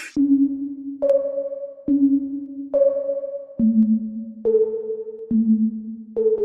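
Electronic dance-pop music in a breakdown with the drums gone: a synth plays single held notes, a little under one a second, jumping between a low and a high note and stepping down in pitch.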